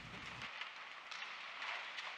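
Quiet room tone: a faint steady hiss with a few soft rustles or ticks, and a low hum that cuts off about half a second in.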